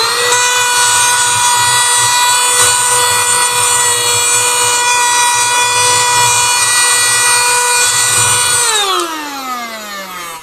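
Portable cordless mini vacuum cleaner switched on, its motor spinning up into a steady high whine while it sucks up sand and dust from a desk. Near the end it is switched off and the whine falls in pitch as the motor winds down.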